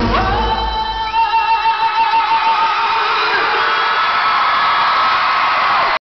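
A live rock band's playing stops about half a second in. A long, high held voice with vibrato carries on for a couple of seconds over a crowd screaming and cheering.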